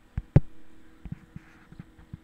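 A few sharp clicks from operating the computer while the full-screen camera view is toggled, the loudest about a third of a second in, over a faint steady low hum.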